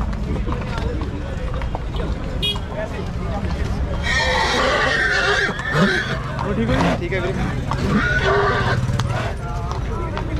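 A horse neighing about four seconds in, one loud wavering whinny lasting about a second and a half, over people's voices.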